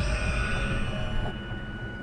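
Eerie sound-design score: a sharp hit, then sustained high ringing tones over a low rumble, fading out toward the end.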